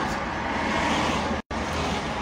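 Steady car and traffic noise heard from inside a car on a city street. The sound cuts out completely for an instant about one and a half seconds in.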